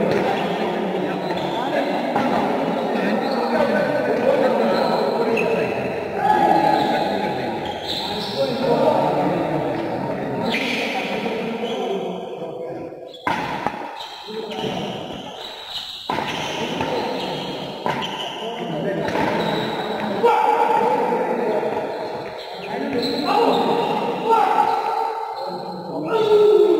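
Voices of players calling and talking in a large sports hall during a doubles badminton rally, with sharp racket strokes on the shuttlecock a few times.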